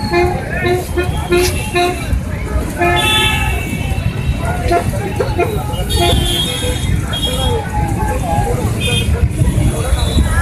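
A horn tooting, first in a quick run of short blasts, then in longer blasts about three and six seconds in. Under it run crowd voices and a steady low rumble.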